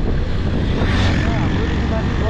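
Motorcycle riding noise: a steady low rumble of the engine and wind on the microphone, with a voice talking over it.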